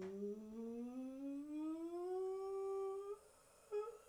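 A person humming one long note that slowly rises in pitch, breaking off about three seconds in, then two short hummed notes near the end.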